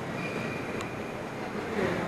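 Steady hubbub of a crowd of visitors, their many voices blurred together in the echo of a huge stone church interior. In the first second a faint high tone sounds briefly and ends with a small click.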